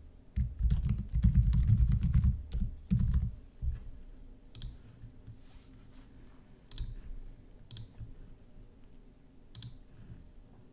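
Typing on a computer keyboard for about three seconds, then a few separate mouse clicks spread over the rest.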